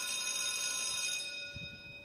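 A bell sound effect ringing, one struck tone that holds and then fades away over about two seconds.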